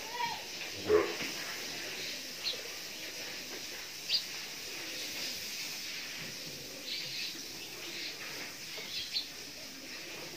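Quiet cow-shed background with a few short, high bird chirps scattered through it, and one brief louder sound about a second in.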